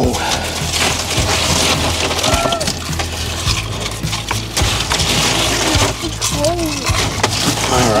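Ice cubes clattering and crunching as handfuls are packed into a gutted tuna's belly cavity. Underneath runs a steady low hum with wind noise.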